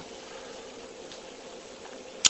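Room tone: a steady background hiss with a faint hum.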